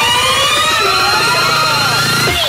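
A rising, siren-like synth sweep in a DJ dance remix: several tones climb together over about two seconds over a held low note while the drum beat drops out, a build-up before the beat comes back.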